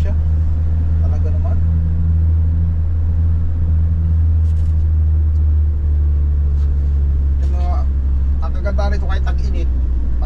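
A delivery van's engine and road noise heard from inside the cab while driving: a steady low drone, its tone shifting slightly about six seconds in. A voice is heard faintly near the end.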